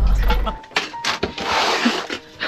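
Low road and engine rumble inside a moving camper van that cuts off about half a second in, followed by a few sharp knocks and a short rush of noise.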